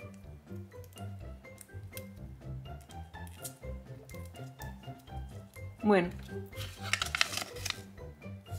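Light background music, with a crackling paper rustle near the end as a folded instruction leaflet is opened out.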